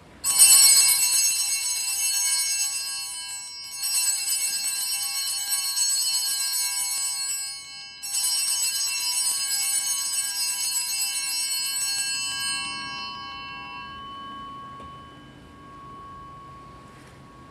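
Altar bells (Sanctus bells) rung three times at the elevation of the chalice after the consecration. Each ring is a bright jangle of several small bells, starting right at the beginning, about four seconds in and about eight seconds in. The last ring fades slowly over several seconds.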